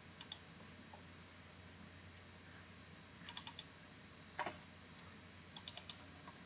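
Faint clicking of a computer mouse: a double click near the start, a quick run of four clicks about halfway, one louder click, and another run of four near the end, over a faint steady low hum.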